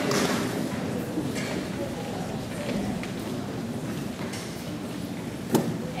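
Audience applause dying away into low crowd murmur and scattered voices, with one sharp thump about five and a half seconds in.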